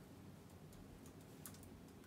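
Faint, scattered key clicks from a MacBook laptop keyboard, the clearest about a second and a half in; among them is the Return key press that runs the typed line.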